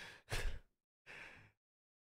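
A man sighing: a short breathy exhale about half a second in, then a softer one just after a second in.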